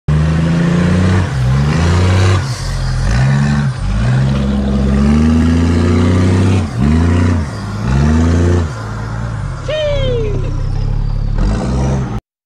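Toyota Land Cruiser 4WD's engine revving up and dropping back again and again as it climbs a steep, loose, rutted track. About ten seconds in there is a short falling cry.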